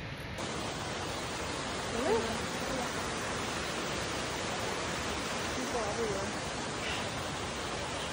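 Steady rushing of a mountain creek cascading over rocks, an even hiss with no rhythm. A faint voice is heard briefly twice, about two and six seconds in.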